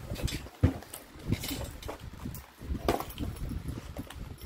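Cardboard toy boxes and plastic packaging handled on a table: a few irregular knocks and rustles, with one sharper knock about two-thirds of a second in.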